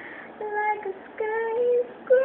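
A young woman's solo singing voice: after a short pause, two held sung notes, each breaking off into a breath.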